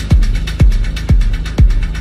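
Minimal techno track: a four-on-the-floor kick drum hits about twice a second over a stepping bassline, with light hi-hat ticks between the kicks.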